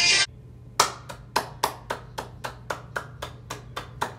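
One person clapping his hands in a steady rhythm, about four claps a second. It starts just after music cuts off abruptly near the beginning.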